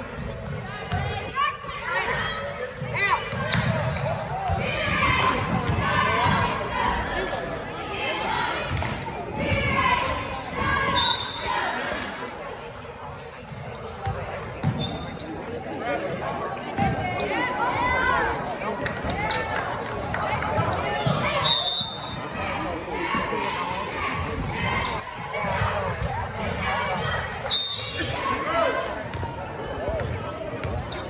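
Basketball dribbled and bouncing on a hardwood gym floor, echoing in a large hall, with indistinct voices of players and spectators throughout. There are a few short high-pitched squeaks, around the middle and near the end.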